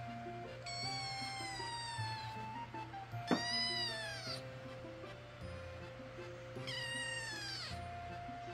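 Black kitten meowing three times, high thin calls of about a second each, the middle one the loudest. These are attention-seeking cries.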